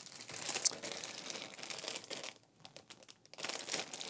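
Clear plastic bag crinkling as a bagged plastic model-kit sprue is picked up and handled. It comes in two stretches, with a short lull a little past the middle.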